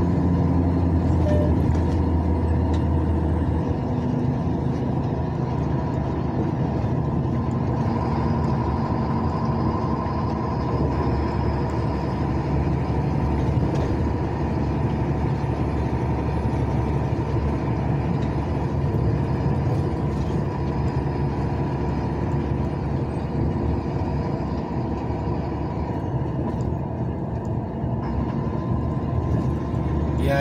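Engine drone and tyre and road noise heard from inside a moving vehicle's cab, running steadily at cruising speed on the highway. A stronger low hum in the first few seconds then eases off.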